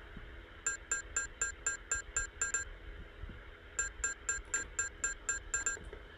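Short metallic pings from a struck teapot lid, sampled and sequenced into an even rhythm of about four a second: two runs of eight or nine strikes with a short gap between them.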